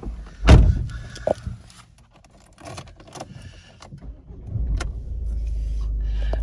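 A loud clunk and some key and switch clicks, then the Ford Focus's 1.0-litre turbocharged three-cylinder engine starts near the end and settles into a steady low idle.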